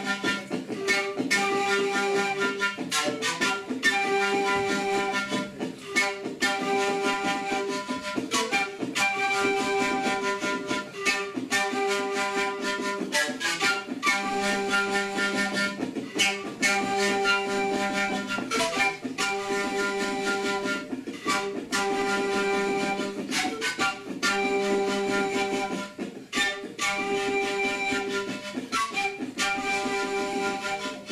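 Andean zampoña panpipes playing a melody together in held, breathy notes, with a stringed instrument accompanying.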